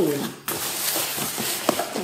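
Cardboard box being opened by hand: a steady rustle and scrape of cardboard flaps being pulled back.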